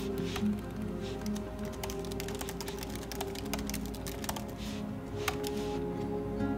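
Fingers typing on a laptop keyboard, a quick run of key clicks through the middle with one sharper click near the end, over soft background music.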